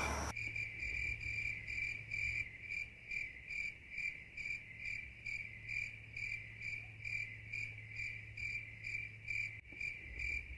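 Crickets chirping at night in a steady, even rhythm of about two chirps a second, over a low steady hum.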